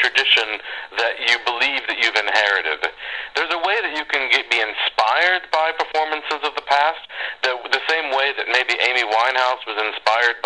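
Continuous talking by one voice, sounding thin like a radio or phone line.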